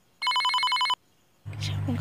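Mobile phone ringing with an old-style telephone-bell ringtone: a rapid trilling ring lasting under a second, between silent pauses. About one and a half seconds in, a voice starts over a steady low hum.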